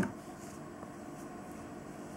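Quiet room tone: a low, steady hiss with no distinct sound event.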